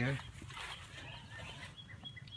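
Birds chirping faintly in the background, with short high chirps and a thin high note coming in near the end; the tail of a spoken question is heard at the very start.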